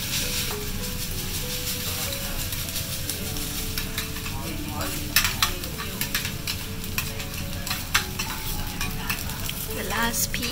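Fried rice sizzling on a hot teppanyaki griddle, cooked in Kobe beef fat, as a chef chops and turns it with two metal spatulas. The blades scrape over the steel plate and give sharp clicks, mostly in the second half.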